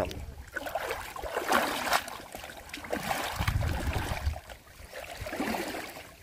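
Water sloshing and splashing in irregular surges as a wader moves in deep muddy water and lifts a hand scoop net, water streaming out through the mesh.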